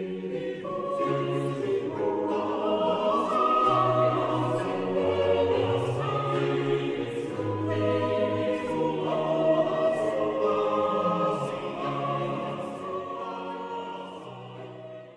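Background choral music: a choir singing slow, long-held chords over a bass line that steps from note to note.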